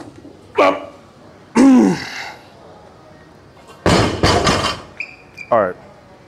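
A man's two short strained grunts during a barbell deadlift. About four seconds in, the loaded barbell is set down on the lifting platform with a thud and a clatter of plates, followed by another brief grunt.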